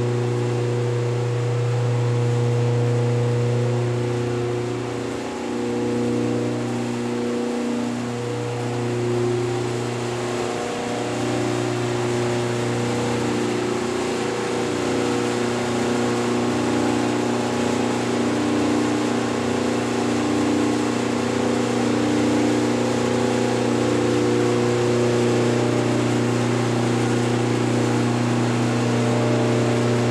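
A steady mechanical drone: a strong low hum with several higher steady tones above it, dipping briefly twice about five and eight seconds in.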